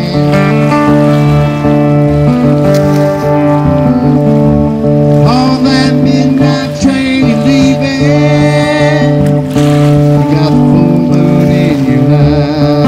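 Fiddle playing a melodic line over steadily strummed acoustic guitar, an instrumental passage in a live Americana song.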